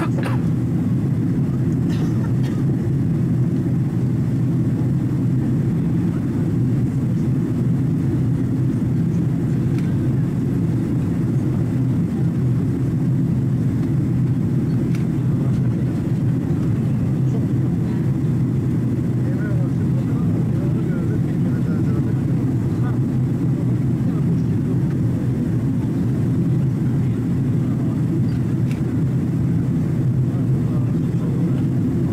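Steady cabin noise of a Boeing 767-300 airliner in flight: the low, even rumble of its engines and airflow heard inside the passenger cabin while descending.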